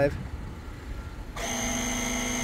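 Small onboard air compressor for rear air-spring suspension bags kicks on about two-thirds of the way in. It runs with a steady hum and a thin high whine, filling the bags toward the preset level.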